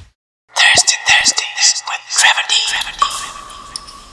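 A whispered voice, loud and breathy, in short phrases from about half a second in until nearly three seconds in. A quieter steady tone with a low hum follows.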